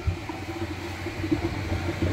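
Water from a hose running steadily into a plastic freshwater tank as it fills, a continuous rushing with a low hum underneath. A short knock comes right at the start.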